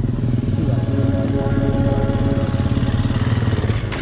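Off-road motorcycle engine idling steadily, with an even pulsing beat.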